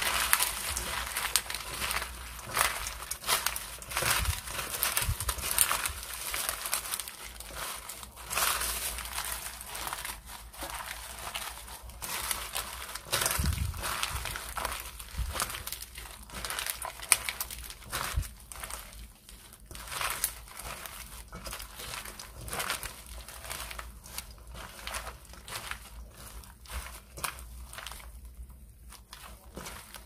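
Rice paper salad being tossed by a gloved hand in a stainless steel bowl: a continuous, uneven crinkling and rustling of the rice paper strips as they are lifted and turned over. It grows a little softer near the end.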